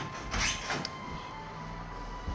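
A wooden door being unlatched and pushed open: a short scrape and click of the latch and hinges about half a second in.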